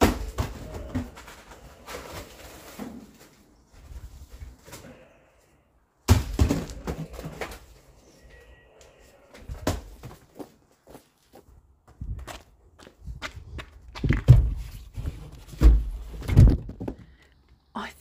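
Spools of plastic baler twine being pulled off plastic-wrapped pallet stacks and dropped or set down: an irregular run of dull thuds and knocks with rustling handling noise between them, the heaviest thuds in the second half.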